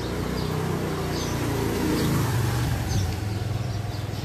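Motorcycle engine running as it rides past close by, loudest about two seconds in.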